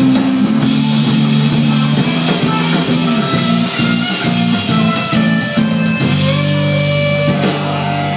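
Live rock band playing: electric guitars over a drum kit, keeping a steady beat through the whole passage.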